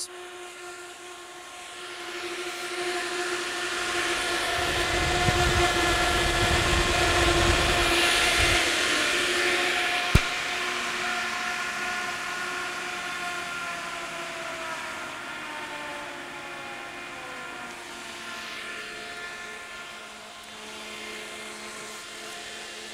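Four large axial fans running with a steady hum and blade tones. About ten seconds in a sharp click is heard as one PSC AC fan is switched off. From then on the fan tones glide downward as the fans wind down, the EC fans being speed-controlled to half speed.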